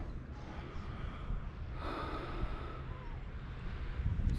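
Low rumbling noise on the microphone throughout, with a short breathy exhale or sniff from a person close to the microphone about two seconds in.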